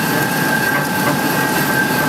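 Plastic film slitting and rewinding machine running steadily, winding a slit strip of printed film onto a core: a continuous mechanical rattle with a steady high-pitched whine over it.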